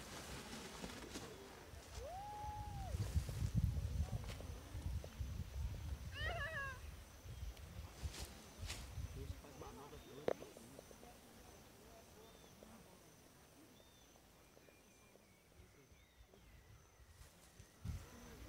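Wind buffeting the microphone in gusts on an open launch slope, strongest in the first half and easing off, with a few brief high calls over it, one rising and falling about two seconds in and a wavering one about six seconds in.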